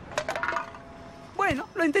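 A few quick, light metallic clinks and taps from an empty aluminium drink can in the first half-second, then a voice about one and a half seconds in.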